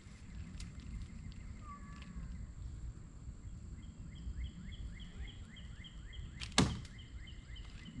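One sharp crack about two-thirds of the way in: a shot jig striking a target dummy. Just before it, a bird gives a fast run of short repeated chirps, about five a second, over a low outdoor rumble.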